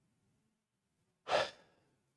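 A man's single short audible breath, like a sigh, about a second and a half in, in an otherwise quiet pause.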